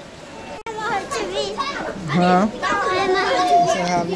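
Children's voices: chattering and calling, with one long drawn-out call near the end.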